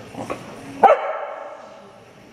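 A dog barks once, sharply, about a second in. The bark echoes in a large hall.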